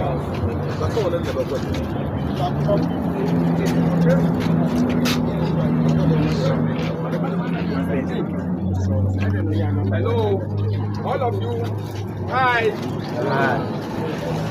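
Crowd chatter over the steady hum of an idling engine. The hum steps up a little in pitch about three seconds in and turns into a lower hum from about nine to eleven seconds. Voices come through more clearly near the end.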